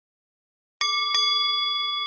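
A bell struck twice in quick succession, about a third of a second apart, beginning nearly a second in; the ringing then carries on and fades slowly.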